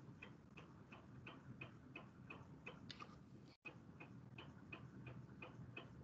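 Faint, even ticking, about three ticks a second, over near-silent line hiss, with a brief cut-out of the audio about halfway through.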